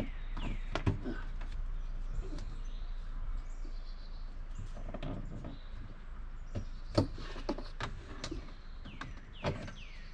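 Scattered clicks, knocks and scrapes of hands working a garden hose into an RV trailer's plastic roof vent, with a sharp knock about seven seconds in and another near the end.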